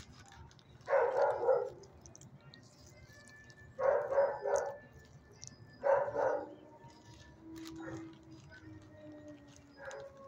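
Dog barking in a shelter kennel run, three loud barks about two to three seconds apart. Faint, drawn-out dog whines follow near the end.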